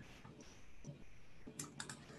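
Faint room tone, then a quick run of about four clicks at the computer about a second and a half in.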